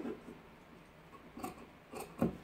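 Large fabric scissors cutting through a strip of fabric on a table: a few faint snips, the clearest about a second and a half in.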